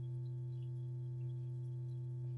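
A steady, low electrical hum, one unchanging tone with a few fainter overtones, under the recording.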